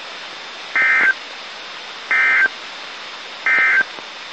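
NOAA Weather Radio SAME end-of-message code ("NNNN"), sent three times as three short data-tone bursts about 1.4 s apart, marking the end of the test tornado warning broadcast. A steady radio hiss runs underneath.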